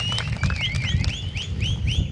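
A quick run of short, arched high whistled notes, about five a second, repeated over a low background rumble.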